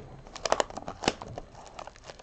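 Plastic trading-card pack wrapper crinkling as it is handled and pulled open, with short sharp crackles, the strongest about half a second and a second in.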